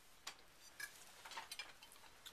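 Faint, scattered light clicks and clinks of cutlery against dishes, about five in two seconds, with near silence between.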